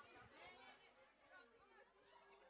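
Faint, indistinct chatter of many voices in the background.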